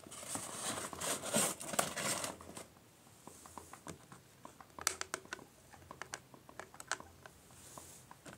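Rustling and crinkling of hand-held objects for the first two and a half seconds or so, then scattered light clicks and taps.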